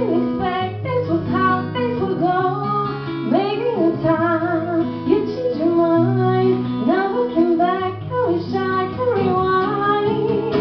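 A woman singing a pop song, accompanied by a steel-string acoustic guitar played live.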